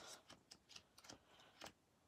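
Near silence with faint, irregular clicks and taps from sticker sheets being handled and leafed through.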